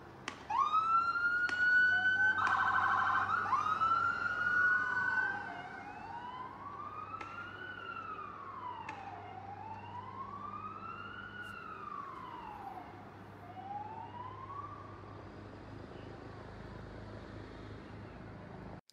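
Police siren: a rising tone that holds, a brief fast warble, then a slow rise-and-fall wail repeating roughly every three seconds. It is louder in the first five seconds.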